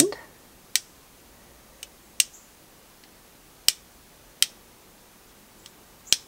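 A paintbrush loaded with watery white gouache rapped against the wooden handle of a second brush: a handful of light, sharp taps at uneven intervals, each one flicking off a spray of paint splatters.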